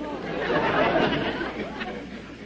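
A studio audience laughing, swelling to a peak about a second in and then dying down.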